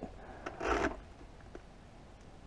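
A brief plastic scrape about half a second in, then a faint click, as a GoPro's spring-loaded clip mount is handled and brought onto a motorcycle helmet's chin bar.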